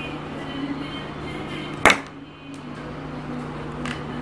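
A homemade syringe toy gun firing once: a single sharp, loud pop about two seconds in, over a steady low hum.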